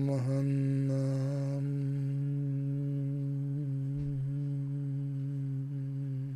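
A man's voice chanting one long, steady low note, mantra-style. It starts on an open vowel and closes into a hum about a second and a half in.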